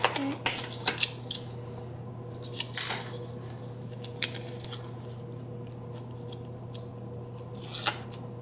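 Paper and planner handling on a wooden table: a spiral-bound planner slid and its page turned, and a sticker sheet picked up and set down, giving light clicks and taps with three brushing swishes, at the start, about three seconds in and near the end. A steady low hum runs underneath.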